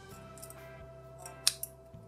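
Steel scissors snipping into a soft rubbery squeeze toy, with a sharp snip about one and a half seconds in and a smaller one just after, over background music.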